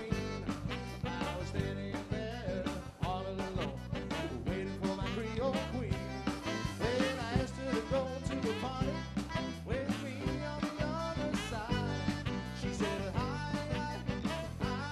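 Live band playing an upbeat, swinging Mardi Gras-style number on accordion, electric guitars, bass, drums and saxophone, with a steady beat.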